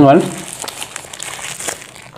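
Paper burger wrapper being crumpled and crinkled in the hands, a busy run of small crackles.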